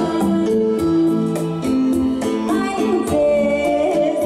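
Live female vocal singing a slow Vietnamese song into a microphone over electronic keyboard accompaniment with a steady programmed beat.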